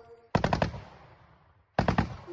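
Machine gun on a pickup truck bed firing two short bursts about a second and a half apart, each a rapid string of several shots with an echo fading after it.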